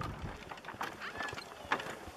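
Horse-drawn cart on the move: the horse's hooves clip-clop, with scattered knocks and clicks from the cart as it rolls.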